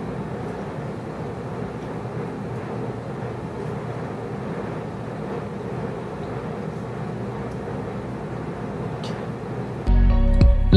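Steady background noise with no distinct events, holding an even level throughout; loud music cuts in abruptly at the very end.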